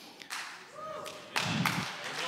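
A few scattered claps from the congregation, with faint voices underneath.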